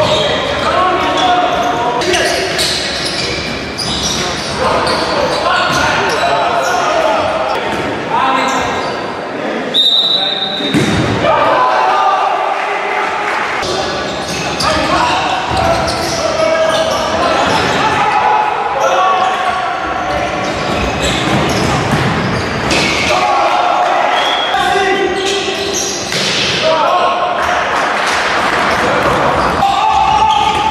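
A handball bouncing on a wooden sports-hall floor amid players' shouts and calls, all echoing in the large hall. A brief high-pitched tone sounds about ten seconds in.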